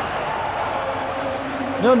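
Stadium crowd noise from a football ground: a steady din of many voices, with a man's commentary starting right at the end.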